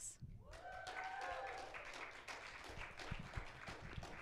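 Audience applauding to welcome a guest onto the stage, a steady patter of many hands clapping, with a voice briefly calling out about a second in.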